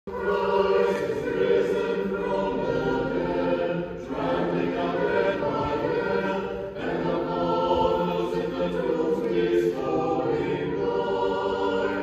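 An unaccompanied church choir sings Orthodox memorial chant in held chords, in three phrases with short breaks about four and seven seconds in.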